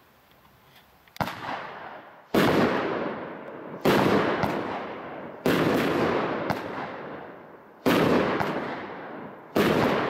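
A 12-shot consumer firework barrage from Skycrafter's 'The Mob' pack firing after about a second of quiet: six sharp bangs roughly a second and a half apart, each trailing off into a fading noisy tail.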